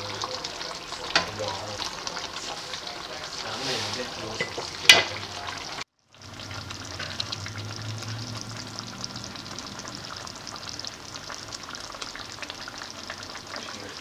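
Menudo stew of pork, liver, hotdog, potato and carrot sizzling in a pan, with a wooden spatula scraping through it. There is a sharp knock about five seconds in, the loudest sound. The sound drops out for a moment just before halfway, then the sizzling carries on steadily.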